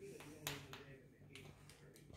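Near-quiet room with a faint steady low hum and a few short, sharp clicks or taps, the loudest about half a second in.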